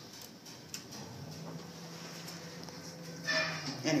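Steady low hum inside a ThyssenKrupp ISIS traction elevator cab, coming in about a second in and holding steady. A voice starts near the end.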